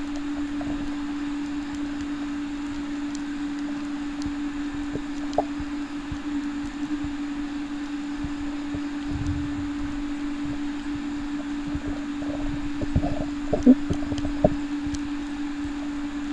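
Underwater camera sound: a steady low hum at one pitch over a faint hiss, with a few faint knocks in the last few seconds.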